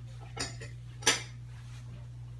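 Cutlery clinking against dishes: two short clatters about two-thirds of a second apart, the second louder.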